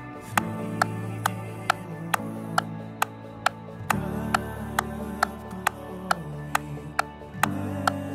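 Electric guitar, a Fender Telecaster Deluxe, playing sustained chords that change about every three and a half seconds, over a metronome click track ticking about twice a second.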